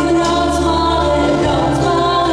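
Choir singing folk-dance music with long held notes.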